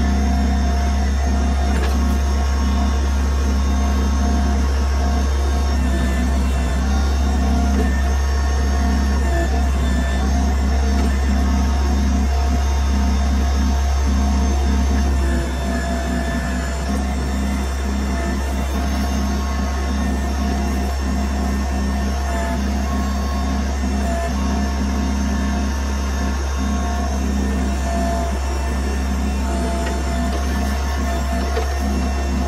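Background electronic music with a steady low drone; the level steps down slightly about halfway through.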